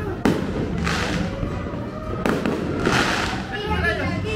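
Fireworks going off: a sharp bang just after the start, then two spells of hissing crackle about a second in and about three seconds in, over a steady low hum of background music.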